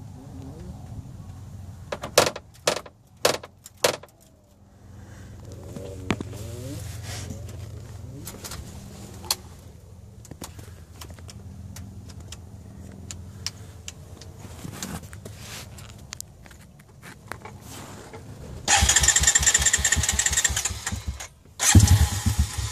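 Honda TRX250 ATV engine being started: a loud spell of cranking and sputtering near the end that cuts off without the engine catching, a start attempt that almost takes. Before it there is a low steady hum and a few sharp knocks.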